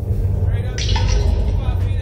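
Steady, heavy wind rumble on the onboard microphone as the slingshot ride's capsule flies through the air. A rider lets out a wordless cry from just under a second in, lasting about a second.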